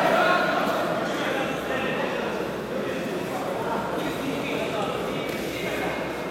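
Indistinct chatter of many voices echoing around a large sports hall, steady throughout with no single clear speaker.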